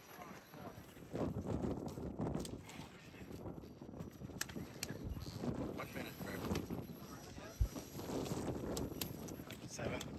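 A motor-on-axle 2.2-class RC rock crawler clambering over granite, its tires and chassis scraping and knocking on the rock in irregular scuffs, with a few sharp clacks, the loudest about three quarters of the way through.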